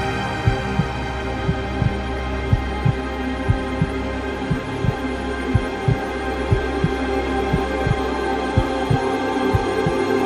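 Techno music: a sustained synth chord held over a low bass pulse that beats in pairs, about one pair a second, with no full four-on-the-floor kick.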